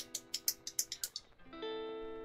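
A loose Gateron yellow mechanical key switch clicking as it is pressed rapidly by hand, about six presses a second, stopping a little after a second in, with no spring ping. Background guitar music plays under it, with a new held chord near the end.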